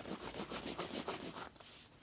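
Edge slicker rubbed quickly back and forth along the dampened edge of a thick cowhide belt strip, about six or seven strokes a second, burnishing the edge smooth. The rubbing stops about one and a half seconds in.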